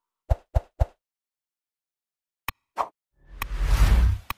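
Sound effects of an animated like-and-subscribe button graphic: three quick pops in the first second, then a click and another pop a little past the middle. Near the end comes a swelling whoosh with a low rumble.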